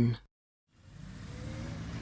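A steady low rumbling background noise with a faint hiss fades in about a second in and slowly grows louder.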